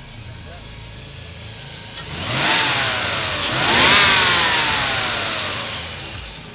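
A new 3.9-litre fuel-injected Rover V8 in a 1985 Range Rover, idling steadily and then revved twice from about two seconds in. The second rev climbs higher and the revs fall away slowly back toward idle.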